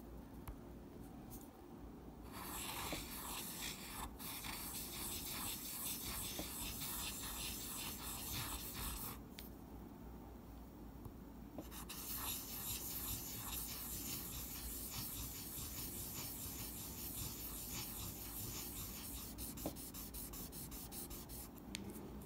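A small metal guitar screw rubbed back and forth with quick strokes on fine abrasive paper, a scratchy scraping. It comes in two bouts, the first about seven seconds long, then a pause of a couple of seconds, the second about ten seconds long.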